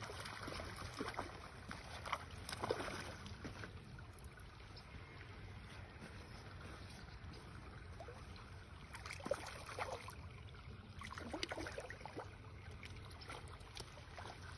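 Water splashing and sloshing as a hooked trout is drawn to the bank and scooped up in a landing net, in short bursts near the start and again later, over a steady low rumble.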